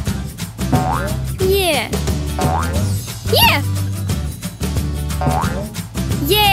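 Cartoon spring 'boing' sound effects for a trampoline bounce, each a pitch swoop up and back down, three times about every two and a half seconds, over background music with a steady bass line.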